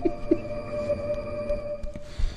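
A dramatic music sting: one steady, eerie drone tone held for nearly two seconds that cuts off abruptly just before the end.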